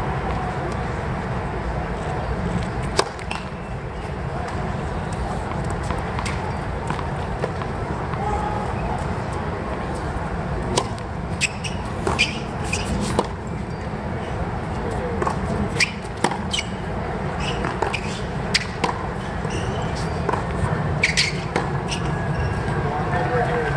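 Tennis ball being struck by racquets and bouncing on a hard court during a rally: sharp pops spaced about a second apart, over a steady murmur of spectator chatter.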